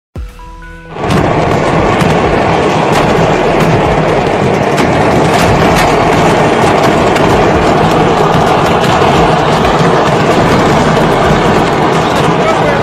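A few short stepped tones, then from about a second in, a dense, continuous barrage of exploding fireworks from a burning fireworks factory: loud, unbroken crackling with many irregular sharp bangs.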